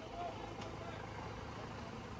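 Faint, steady low rumble of a vehicle engine on a wet road, under a soft even hiss.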